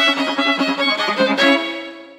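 Violin music: a quick run of bowed notes, then a final held note about one and a half seconds in that fades away.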